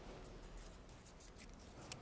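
Near silence with faint, soft crinkling and clicking of a small paper raffle ticket being unfolded by hand.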